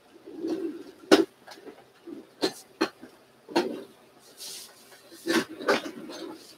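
A large hanging quilt and its stand being shifted: a series of about six sharp clicks and knocks, the loudest about a second in, with a short burst of fabric rustling and a few brief low hums between them.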